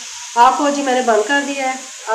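Sliced onions sizzling in oil in a nonstick frying pan, browned to a crisp golden colour. A voice talks over the sizzling from about a third of a second in.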